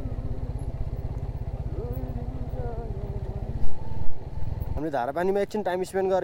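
Motorcycle engine running at low speed on rough gravel, with an even low pulsing, broken by two loud thumps about half a second apart just past the middle. About five seconds in the engine sound stops and a person's voice takes over.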